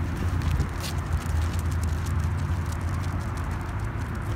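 Wind rumbling on the microphone, with faint scattered clicks.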